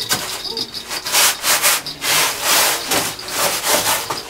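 Rhythmic rasping strokes, roughly two a second.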